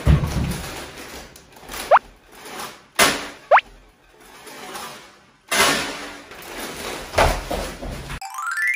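A low thud, then two short rising whistle sound effects about two and three and a half seconds in, among loud bursts of crinkling from plastic snack bags being handled.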